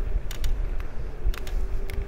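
Steady low rumble of wind and road noise on the microphone while moving along a street, with a few light clicks and creaks, and a faint steady hum starting about halfway through.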